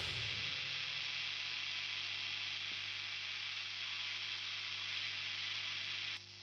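The last chord of the electric guitar and bass cuts off at the start, leaving a steady hiss with a faint low hum: noise from the plugged-in instruments' signal chain with nothing being played.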